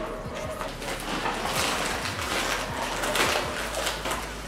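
Plastic and cardboard parcel packaging rustling and crinkling as it is unwrapped by hand, with many small crackles and scrapes.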